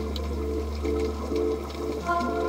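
Background music: a steady low drone under a short note that repeats about three times a second.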